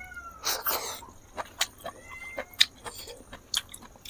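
Wet chewing and lip-smacking clicks of a man eating rice and curry by hand, with two short high animal calls, one falling in pitch at the start and one rising about two seconds in.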